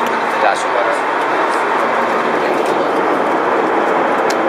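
Steady jet airliner cabin noise in cruise flight: the engines and the airflow make an even, continuous rush, with faint voices mixed in.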